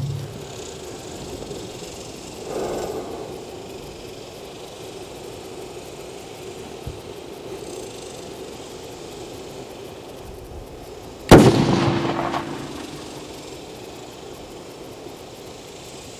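A single rifle shot from an unsuppressed 6.5 Creedmoor Howa 1500 precision rifle about eleven seconds in, sharp and loud, with the report dying away over about a second and a half.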